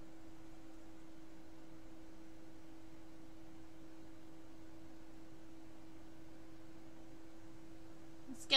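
Steady faint hum at one pitch, with a weaker higher tone, over a soft even hiss, unchanging throughout.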